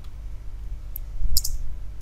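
A few sharp clicks from computer input while code is edited: a single click about a second in and a quick pair shortly after, over a steady low hum.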